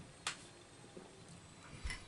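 A man sipping beer from a glass: one short sharp click about a quarter second in, then a few faint small mouth and glass sounds over quiet room tone.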